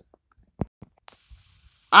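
A mostly quiet pause holding a single short click a little over half a second in, then a faint high hiss for most of a second.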